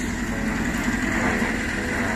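Small engine of a portable concrete mixer running steadily with a fast, even chugging.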